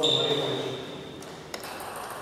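A man's short call with a high ringing ping over it, the ping fading within about a second. A single sharp tap of a table tennis ball follows about a second and a half in.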